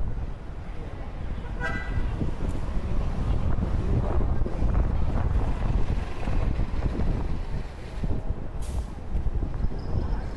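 Wind buffeting the microphone over the noise of street traffic, with a short car horn toot about two seconds in.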